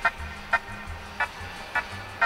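Short sharp taps repeating about twice a second, evenly spaced, over a low rumble.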